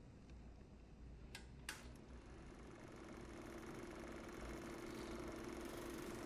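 Film projector being switched on: two sharp clicks a little over a second in, then a faint steady hum that slowly grows louder as it runs.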